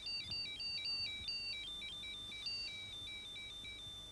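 A high electronic beeping tune: two pure tones stepping up and down together in a quick, ringtone-like melody, ending at the close. It works as a sci-fi alert signal announcing that something has happened.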